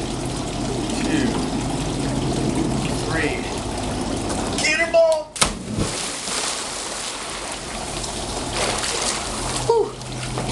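A person cannonballing into a swimming pool off a diving board: a sudden heavy splash about five seconds in, then water churning and falling back across the pool.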